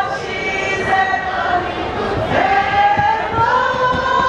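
Several voices singing together, loud, with long held notes; about two seconds in the pitch slides up and is held.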